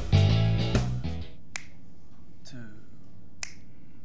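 Theme music fades out about a second in. Then single finger snaps follow, about one a second, setting a tempo.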